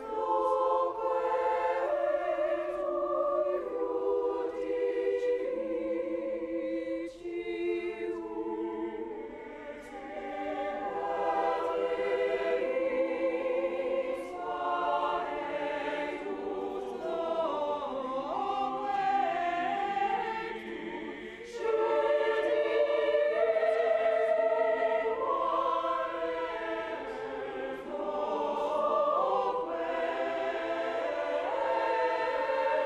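Mixed choir of men's and women's voices singing a sustained choral piece, phrase after phrase, with brief dips in loudness between phrases.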